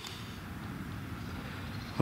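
Low, steady outdoor background noise with no distinct sounds in it, such as distant traffic or light wind.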